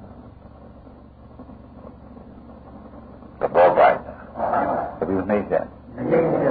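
A pause in a man's talk filled by the steady hiss and hum of an old recording, then his voice resumes about three and a half seconds in.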